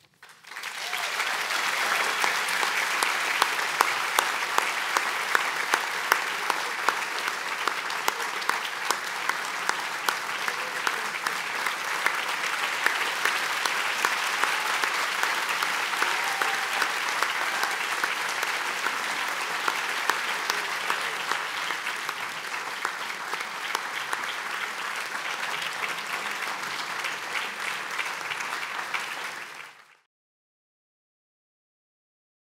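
Audience applauding, a dense, steady crowd of claps that goes on for nearly half a minute and stops abruptly near the end.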